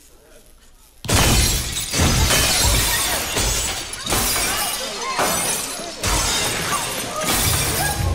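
Glass shattering in a sudden loud crash about a second in as the lights burst, followed by further crashes of breaking glass over a dense noisy din, with people crying out.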